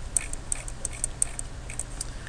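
Computer mouse scroll wheel clicking as a spreadsheet is scrolled, a run of light, uneven ticks about five a second. A low steady hum runs underneath.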